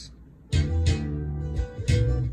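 Playback of a recorded slap-style bass line on a Kingman bajo: after a short quiet start, low plucked notes with sharp slapped attacks begin about half a second in.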